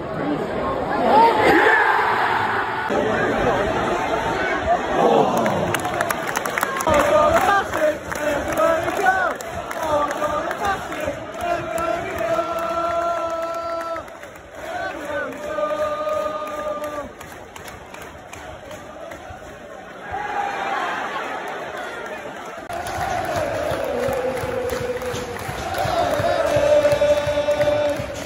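Football stadium crowd shouting and cheering, with nearby fans' voices close on the microphone. Partway through, the fans break into a chant sung in long held notes, dip briefly, then swell with shouting and cheering again near the end.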